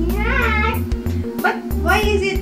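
Upbeat background music with a steady beat, and a high-pitched voice over it whose pitch rises and falls, once about half a second in and again near the end.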